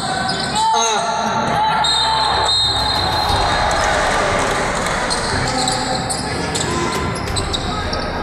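Basketball bouncing on a hardwood court amid shouting voices and the steady din of spectators, echoing in a large gymnasium.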